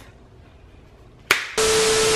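A faint hush, then a sharp click, then a burst of loud TV static hiss with a steady test-tone beep through it: a glitch sound effect over colour bars.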